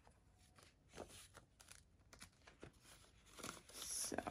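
Faint handling of paper banknotes and a binder's clear plastic pouches: a few light clicks, then a soft rustle that grows louder near the end.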